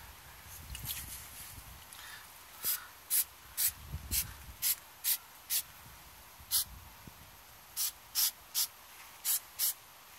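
Aerosol can of grey spray paint giving about a dozen short, quick bursts of hiss onto paper, with brief gaps between them, starting a few seconds in.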